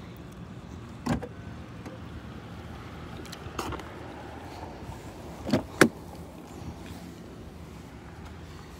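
A 2017 Cadillac CT6 plug-in's body being handled: a few sharp clicks and knocks over a faint steady low hum, the loudest a double clunk about two-thirds of the way through as a rear door is opened.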